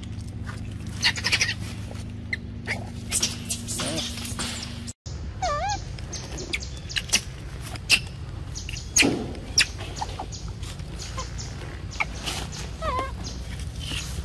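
A young macaque eating a mango: repeated wet chewing and smacking clicks. A short warbling call sounds about a second after a brief dropout, and again near the end.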